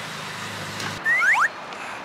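Outdoor street ambience with a steady low traffic hum. About a second in, the sound cuts and a few short rising whistle-like chirps follow.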